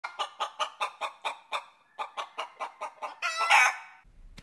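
Quick clucking calls, about five a second, with a short break partway through, ending in one longer, louder squawk.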